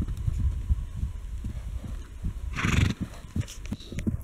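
Horses cantering and galloping loose on dry, hard pasture ground, their hoofbeats thudding irregularly. A short loud burst of noise comes about two and a half seconds in.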